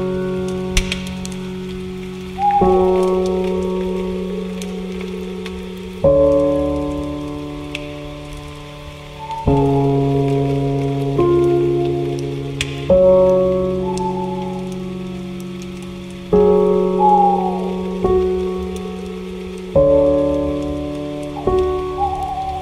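Soft, slow piano music: a new chord is struck about every three and a half seconds and left to ring and fade. Short falling bird calls come in now and then over a faint steady hiss with scattered ticks.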